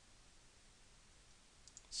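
Near silence with a faint hiss; near the end, a couple of faint, short computer mouse clicks.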